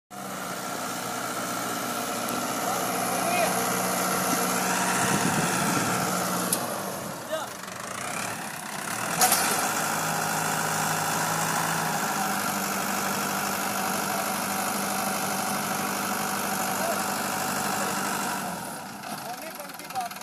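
ACE tractor's diesel engine running steadily while hitched to two disc harrows. Its pitch sags and recovers about seven to eight seconds in, with one sharp click about nine seconds in.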